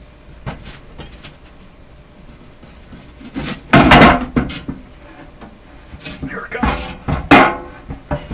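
The metal front panel and chassis of a vintage tube RF signal generator being pulled forward out of its steel cabinet: a few small clicks, then two loud metal-on-metal scrapes, about four and seven seconds in.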